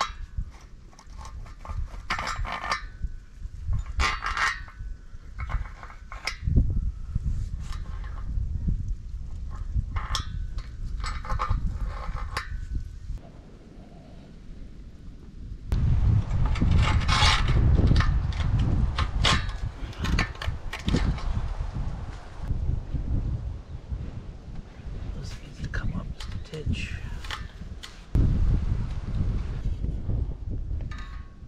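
Irregular knocks, clinks and scrapes of steel angle-iron rails being shifted and tapped against a steel post base, over a low rumble that swells in the middle and again near the end.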